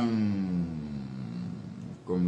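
A man's long, drawn-out hesitation sound: one held vowel that falls slowly in pitch for about a second and a half, then fades.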